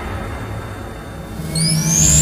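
Sci-fi logo-intro sound design: a low rumble that fades, then a high rising whine and a low hum come in near the end as the build-up to the logo hit begins.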